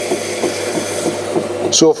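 Merlin Potter's Mate electric potter's wheel running with a steady buzz while wet, gritty clay is centered under the hands on the spinning wheel head.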